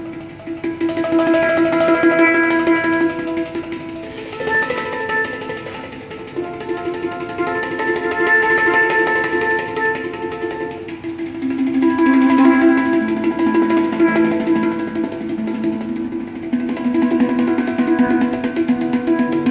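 Handpan (steel hang drum) played with the fingertips: a melody of ringing notes that overlap and sustain into one another.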